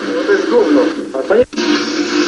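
A man's voice speaking, with a thin, radio-like quality, cut off by a sudden brief dropout about one and a half seconds in, after which a fuller, brighter sound comes in.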